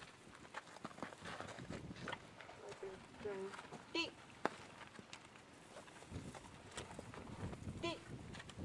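Soft, scattered hoof steps and shuffling of a horse on dirt footing, with one sharp click a little after the middle.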